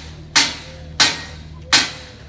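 Three sharp handclaps at an even beat, about one every 0.7 seconds, over a steady low hum.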